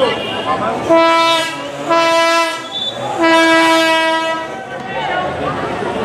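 Three blasts of a horn sounded among the crowd at a steady pitch, the third one the longest, over background crowd voices.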